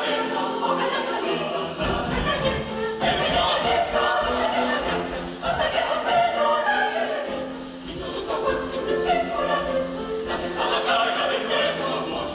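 Mixed youth choir singing an Ecuadorian folk song, with sharp percussive accents over the voices. A low part comes in about two seconds in and drops out about seven seconds in.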